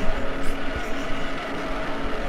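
A loud, steady buzzing rumble made of many held tones over a noisy haze, a comic stand-in for the shaking of a 4D vibrating cinema seat.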